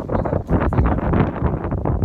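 Wind buffeting a hand-held phone's microphone: a loud, uneven rumble.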